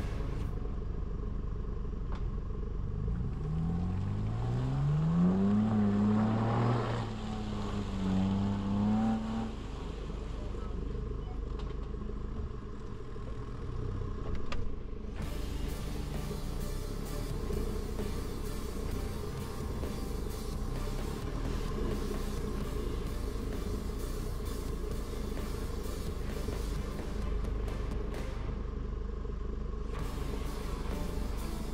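Off-road 4x4 engine running at low revs, revved up a few seconds in with its pitch climbing for about three seconds, held, then eased off about ten seconds in, as the vehicle works through deep mud.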